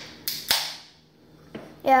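A short hiss and then a single sharp crack about half a second in, with a brief fading tail.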